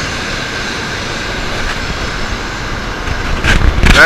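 Shinkansen bullet train pulling out of the station past the platform: a steady rushing rumble of the moving cars, with a few loud thumps on the microphone near the end.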